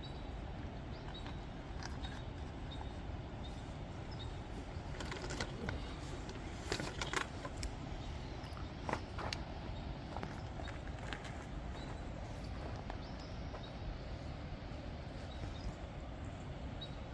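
Steady, low-level rushing background noise, with a few faint clicks and knocks between about five and nine seconds in.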